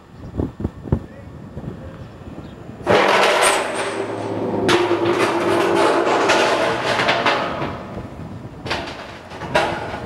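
An LPG tank launched off a steel launch ramp: a sudden loud rush about three seconds in, followed by several seconds of noisy rumble that dies away after about seven seconds.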